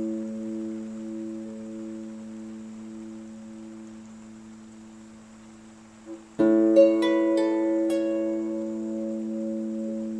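Celtic harp playing slow meditative music: a chord rings and slowly dies away, then a new chord is plucked about six seconds in, followed by a few higher single notes ringing over it.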